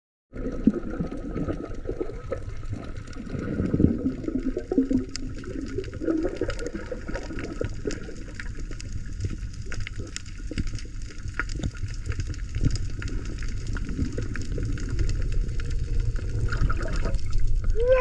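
Underwater sound from a GoPro held below the surface over a coral reef: a steady, muffled water rush dotted with many small sharp clicks and crackles.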